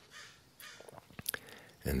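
A pause in a man's talk: a faint breath and a few small sharp mouth clicks, then the start of speech near the end.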